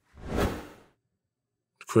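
A short whoosh transition sound effect that swells and fades away in under a second.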